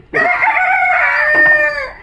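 A rooster crowing: one long call lasting most of two seconds, dropping in pitch toward the end.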